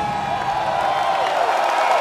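Large concert crowd cheering and screaming, with a few long held screams above the din, some sliding down in pitch near the end.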